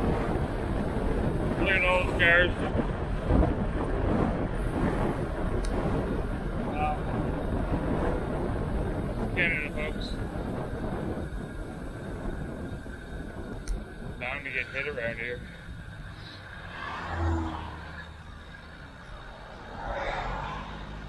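Wind buffeting the microphone of a handlebar-mounted action camera, with road and tyre noise from a bicycle riding along. It runs loud and rough for the first half, then eases to a quieter rumble.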